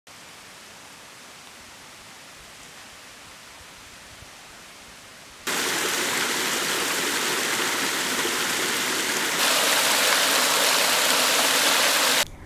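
A faint, even hiss for the first half, then a stream of water running over rocks cuts in suddenly about halfway and grows louder again a few seconds later as a small cascade splashes down.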